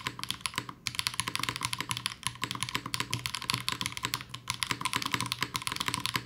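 Fast, continuous typing on a Class 0413 custom mechanical keyboard with HMX switches and GMK doubleshot ABS keycaps, the keys clacking in quick succession. The typing breaks off briefly twice: just under a second in, and a little past four seconds.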